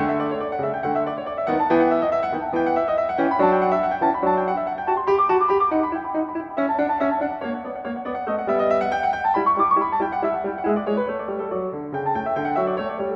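Shigeru Kawai grand piano played solo: a brisk classical piece, mostly in the middle register, with quick runs of notes.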